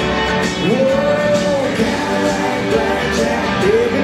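Live country band playing loudly, guitars and drums with a singer, in a medley of 1990s country hits. About a second in, a long note slides up and is held for about a second.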